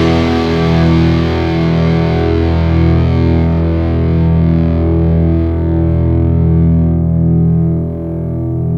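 Distorted electric guitar, a Fender Telecaster with humbuckers, letting the song's final held chord ring out, the treble slowly dying away while the low notes sustain loudly.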